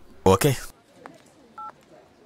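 A short, loud vocal sound with a falling pitch, then about a second and a half in a single brief telephone keypad beep, two pitches sounding together.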